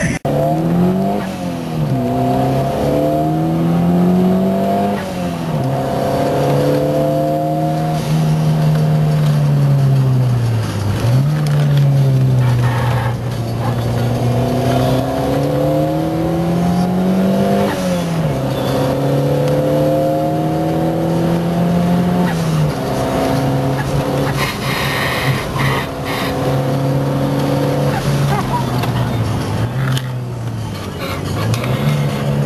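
Ford Cosworth car's engine being driven hard on a circuit. Its note climbs with the revs and drops sharply at each gear change, several times over. About eleven seconds in it sinks low as the car slows, then climbs again.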